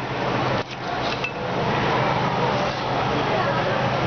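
Busy food-court background of indistinct chatter and a steady hum, with the clink and scrape of a spoon against a bowl as rojak is mixed.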